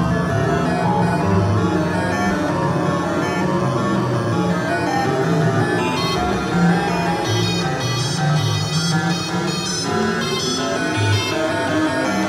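RMI Harmonic Synthesizer played on its keyboard: a continuous run of changing synthesizer notes, weighted toward the low register. Brighter high overtones come in about halfway through.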